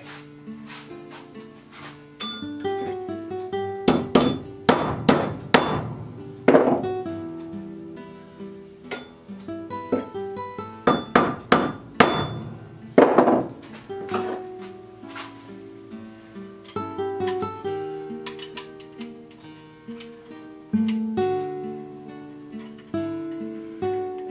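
Steel hammer striking a steel auger bit extension shank laid on a block of railroad iron, to straighten a kink. There is a run of about six sharp blows around four to six seconds in and another run of about five around eleven to thirteen seconds in, with lighter taps later. Plucked-string background music plays throughout.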